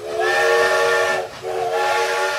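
Steam locomotive whistle blowing two blasts, a chord of several steady tones over a steam hiss. The first lasts about a second, and the second begins about a second and a half in.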